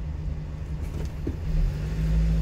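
Vehicle engine idling, heard from inside the cab as a steady low hum; about a second and a half in, the low rumble grows louder.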